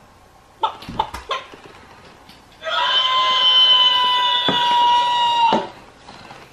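Animated Hei Hei rooster plush toy sounding off electronically: after a few short clicks, it gives one loud rooster cry held at a single flat pitch for about three seconds, starting a little past the middle.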